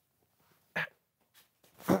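A man's short vocal grunt a little under a second in, then a brief "oh" near the end; the rest is quiet.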